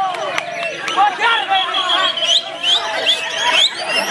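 White-rumped shamas (murai batu) singing hard in a contest, a dense run of quick varied whistles and trills from several caged birds at once, over the chatter of a crowd.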